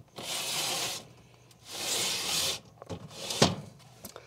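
A person shifting on a fabric dog bed in a cramped enclosure: clothing and bedding rustle twice, each time for under a second, followed by a couple of light clicks.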